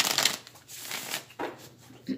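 A Tarot of Klimt deck being shuffled by hand. A loud rush of cards sliding together at the start, then a softer shuffle about a second in and a brief last stroke.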